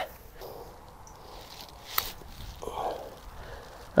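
A single sharp click of a golf club striking the ball on a short chip shot from beside the green, about two seconds in, over faint outdoor ambience.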